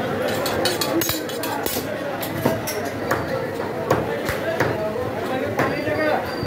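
Heavy butcher's cleaver chopping through goat meat and bone on a wooden block: a run of sharp, irregular strikes, roughly two a second, over background talk.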